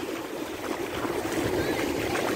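Shallow ocean surf washing in over a sandy beach: a steady wash of water noise.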